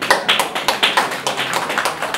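A small audience clapping, a quick irregular patter of many hand claps that thins out near the end.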